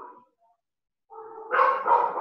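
A dog's drawn-out call, starting about a second in and carrying on steadily, after a short faint sound at the start.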